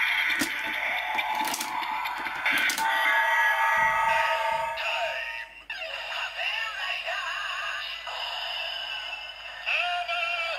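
Kamen Rider Zi-O DX Ziku Driver toy belt playing its electronic transformation sequence through its small speaker. A few plastic clicks come as the driver is worked, then a synth standby tune plays. A recorded voice calls "Kamen Rider Zi-O!" about six seconds in and "Armour Time!" at the end.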